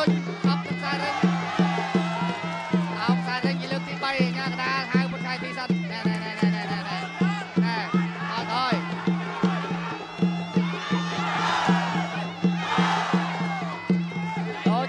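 Traditional Khmer boxing music: a reedy sralai oboe melody over a steady drumbeat of about two to three strokes a second. Near the end the crowd gets louder for about two seconds.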